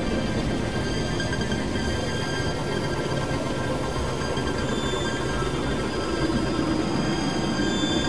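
Experimental synthesizer drone-noise music: a dense, unbroken rumbling low end under many thin, steady high tones, holding one level throughout, with a grinding, train-like texture.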